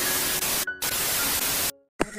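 A burst of TV-style static hiss used as a glitch transition sound effect. It breaks off briefly about two-thirds of a second in, then resumes and cuts off suddenly shortly before the end.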